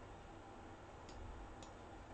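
Near-silent room tone with a low hum, broken by two faint, short clicks about half a second apart a little past the first second.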